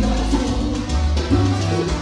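Live salsa band playing, with a prominent bass line of held low notes.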